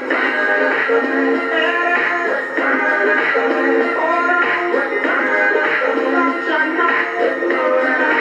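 A pop song with a singing voice playing from a vintage Panasonic flip clock radio, thin in the bass.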